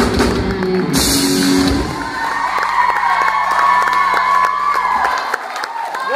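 A live rock band plays the end of a song. About two seconds in, the drums and bass drop out and a held high note rings on over a cheering crowd.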